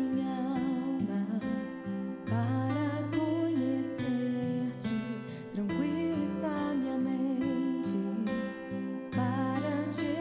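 A woman singing a gospel song into a microphone, holding long notes over instrumental accompaniment.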